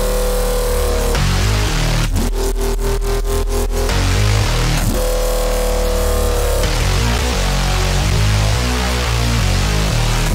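Heavy drum and bass drop at 175 BPM: distorted, cut-up screamer bass with pitch bends over drums and a deep sub bass. A rapid stuttering chop comes about two seconds in, and a held bass note bends downward in pitch near the end.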